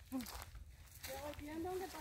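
Faint voices of people talking some way off, with a brief short sound near the start and a low rumble of handling or wind underneath.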